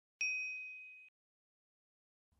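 A single bright ding: a bell-like chime struck once that rings for about a second and fades away. It is a transition sound effect on a chapter title card.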